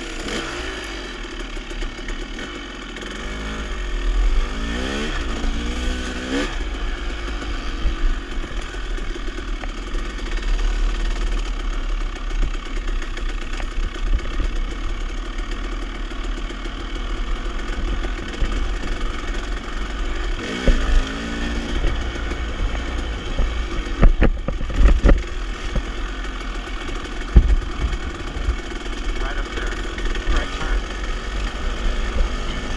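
Off-road dirt bike engine riding along a forest trail, revving up through the gears about four seconds in and again about twenty seconds in, over a steady low rumble. Several sharp knocks come in the last third.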